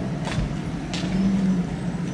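Steady low drone of a heavy vehicle's engine running, swelling a little past the middle, with two sharp cracks from fireworks raining sparks.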